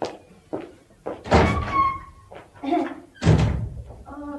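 A door being opened and shut: a few light knocks and clicks, then a heavy thump about three seconds in as it closes.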